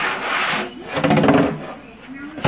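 An empty plastic gallon jug scraping and rubbing across a hardwood floor as it is pushed: a rasping scrape, then a longer, louder rub with a squeaky, pitched edge.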